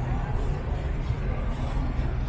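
Steady city street ambience: a continuous low rumble of urban background noise with faint voices of people nearby.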